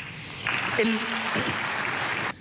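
Audience applauding, breaking in about half a second in and carrying on steadily, with a man's voice starting a word over it.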